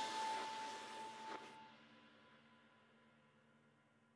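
The last chord of an indie rock song ringing out and fading, with a held note and cymbal wash dying away, then cut off to silence about a second and a half in.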